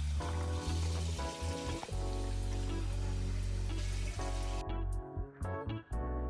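Tap water running and splashing onto rice being washed, under background music; the water hiss cuts off abruptly about four and a half seconds in, leaving the music and a few clicks.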